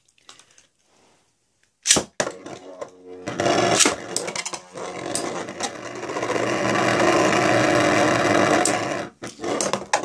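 Two Beyblade spinning tops are launched into a plastic stadium with a sharp crack about two seconds in. They then spin and battle with a steady scraping whir and repeated sharp knocks as they strike each other and the stadium wall.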